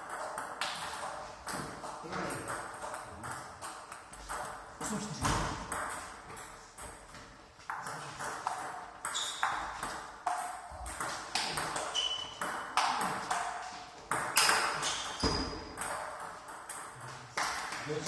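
Table tennis balls clicking in quick succession off bats and tables during rallies, with play at more than one table in the same hall.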